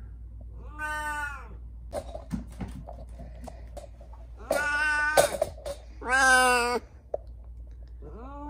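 Domestic cat meowing three times, each meow under a second long, the last two louder, with a few light clicks in between.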